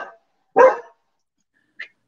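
A dog barking once, a short, loud bark about half a second in, followed by a faint brief sound near the end. It is an alert bark: the dog thinks it can hear someone.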